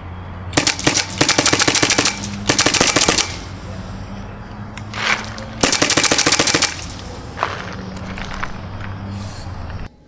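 Freshly oiled Supercocker (Autococker) paintball marker firing rapid strings of shots: three quick volleys in the first three seconds, then another about halfway through.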